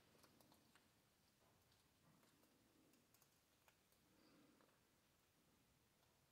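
Near silence, with a few faint, sharp clicks of small metal differential parts being handled with pliers.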